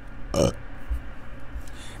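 A man's single short burp, muffled behind his hand, about half a second in.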